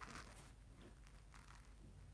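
Near silence: room tone, with a few faint soft rustles.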